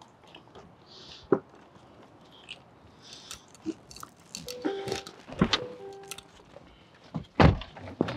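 Car doors opening and thudding shut as people get into a car, with a few separate thuds, the loudest shortly before the end. A couple of short steady tones sound in the middle.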